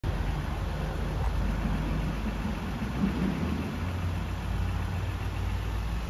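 A vehicle engine idling close by, a low steady hum.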